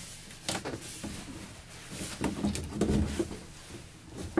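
Light knocks and rustles of plastic being handled: a corrugated plastic drain hose is pushed into a hole in a plastic water container, and the container is shifted into place in a wooden cabinet. The handling is busiest about two to three seconds in.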